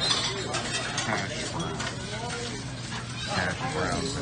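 Background voices and kitchen clatter in a diner, over a steady low hum. A metal spatula clicks and scrapes on a flat-top griddle where hash browns are frying, with the sharpest click right at the start.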